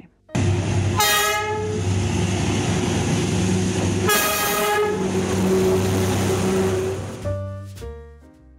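Vietnam Railways D19E diesel-electric locomotive passing close by, its engine running with a steady rumble. It sounds its horn twice, short blasts about three seconds apart, and the sound fades away near the end.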